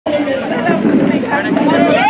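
Speech with crowd chatter: a woman talking into a handheld microphone while several other voices talk over one another.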